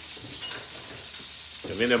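Salmon fillets frying in olive oil in a nonstick skillet, a steady sizzle.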